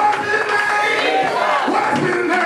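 A church congregation shouting and calling out together, many voices overlapping, with the preacher shouting into a microphone over them.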